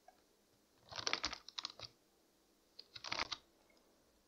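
Computer keyboard typing in two short flurries of keystrokes, the first about a second long and the second about half a second, with silence between them.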